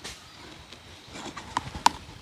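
A few sharp knocks, the two loudest close together near the end.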